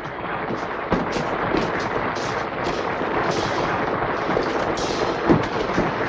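Studio audience applauding, steady dense clapping with a few sharper claps standing out.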